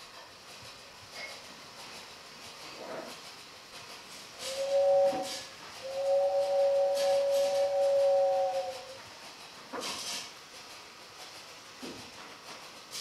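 Steam-train whistle sounding two notes together: a short blast, then a longer one of about three seconds, with hisses of steam around the blasts and again shortly after.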